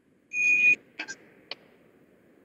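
A short, high, steady electronic beep lasting about half a second, followed by three faint clicks about a second in.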